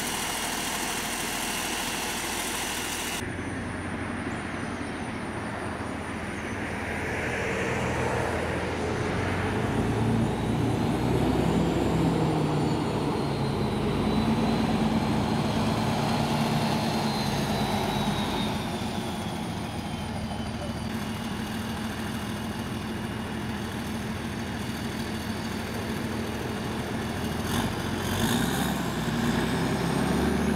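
Cadillac Gage V100 armored car's engine running, then pulling away with the engine note rising about ten seconds in and driving on at a steady pace. A faint high whine rises and falls while it accelerates.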